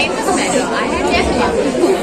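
Several people talking and chattering at once, with overlapping voices.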